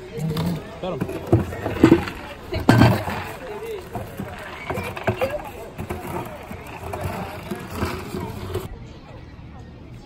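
Mostly people's voices, low talking and murmurs, with a couple of sharp knocks about two and three seconds in. It drops quieter near the end.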